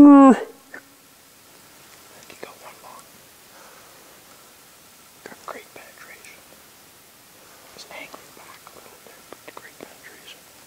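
A wounded bull moose gives one short, loud moan that wavers and falls in pitch: a death moan from the bull shot with the longbow. Faint whispering follows.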